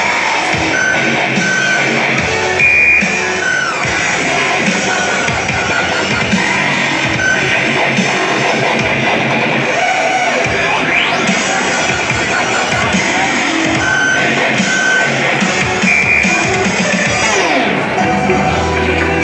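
Loud recorded dance music played through a PA speaker system, with a rising electronic sweep about eleven seconds in and a falling one near the end.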